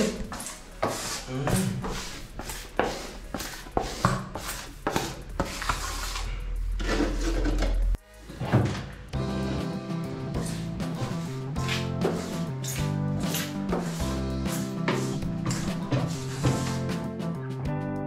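A rubber grout float scraping and rubbing across glazed wall tiles in irregular strokes, packing grout into the joints. About eight seconds in the sound cuts off abruptly and background music with guitar takes over.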